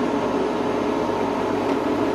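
ChocoVision Revolation 2B chocolate tempering machine running, its motor turning the bowl of tempered dark chocolate past the baffle: a steady, even hum.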